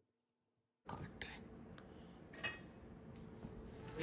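Near silence for the first second, then faint kitchen noise with a short clink of cookware or a utensil about two and a half seconds in.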